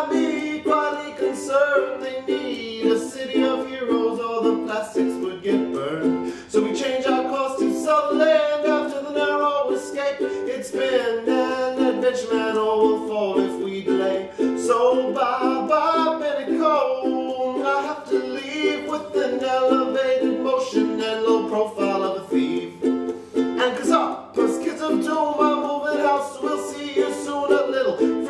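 Ukulele strummed in a steady rhythm through a chord progression, in a small room.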